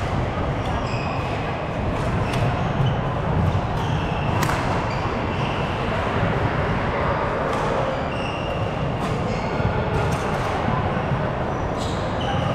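Badminton rally on a wooden indoor court: sharp racket hits on the shuttlecock every second or two, the loudest about four seconds in, with short squeaks of court shoes on the floor. Under it all runs a steady murmur of voices in a large hall.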